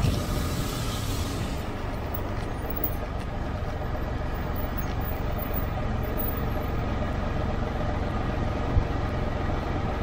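Can-Am Spyder three-wheeled motorcycle running at low speed in a steady low rumble, heard from a camera mounted on the bike. A brief rush of wind noise on the microphone at the start, and a single thump near the end.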